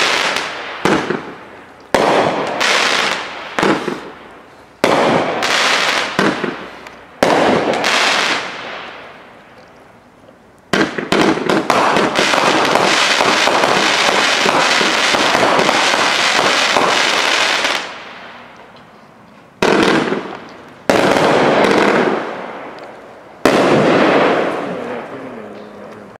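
Aerial fireworks shells bursting one after another, each sudden bang trailing off in a fading crackle. A dense, unbroken stretch of crackling runs for about seven seconds in the middle, followed by three more separate bursts that fade out.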